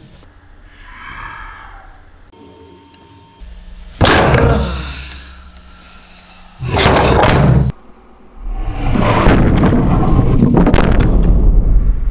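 A gloved fist strikes a wooden board clamped in a bench vise: a sudden loud thud about four seconds in, and the board does not break. A second loud sound of about a second follows, then a long rough loud noise through the last few seconds.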